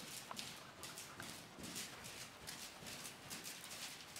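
A horse's hoofbeats on soft sand arena footing at a steady trot, a muffled rhythm of about two to three beats a second.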